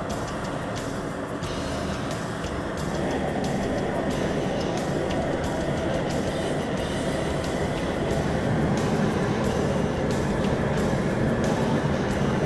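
Background music with a steady beat of about two ticks a second.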